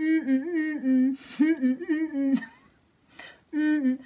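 A woman singing short 'na na na' notes to a little tune with her tongue stuck out, a vocal warm-up exercise. A phrase of quick notes, a pause of about a second, then a brief start of the next phrase near the end.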